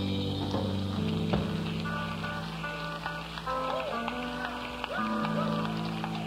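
Live country-rock band playing the closing instrumental bars of a slow song: long held chords, with a few sliding, bending notes in the middle.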